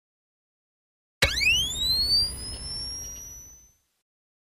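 Electronic sweep sound effect for an intro logo: a tone hits suddenly about a second in, rises quickly in pitch, then keeps gliding slowly higher over a low rumble as it fades out over about two and a half seconds.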